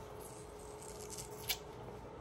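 Quiet small-room tone with a steady faint hum, some faint rustling, and one sharp click about one and a half seconds in.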